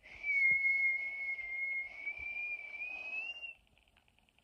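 A person whistling one long, slightly wavering note that rises a little near the end and stops about three and a half seconds in.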